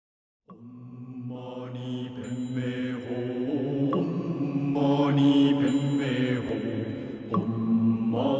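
Low-voiced Tibetan Buddhist mantra chanting laid on as a soundtrack, starting about half a second in and growing louder, the voices holding long steady notes while the vowels slowly shift.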